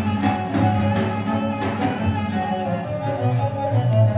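Live Persian classical music: a kamancheh playing a bowed melody, with occasional strikes on a daf frame drum.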